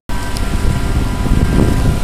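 A steady engine hum with a low rumble of wind on the microphone, after a brief cut to silence at the very start.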